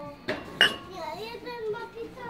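A ceramic plant pot being handled: a light knock, then one sharp ringing clink about half a second in. Background voices of other shoppers, including children, run underneath.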